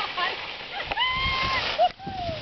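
Skis scraping over packed snow with a steady hiss, and a high-pitched voice calling out: short yelps near the start, then one held whoop for about half a second, a second in.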